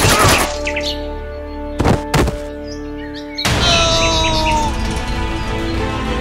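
Background music with edited impact sound effects: a loud hit at the start, then two sharp knocks about two seconds in, and another loud burst with short high chirps a little later.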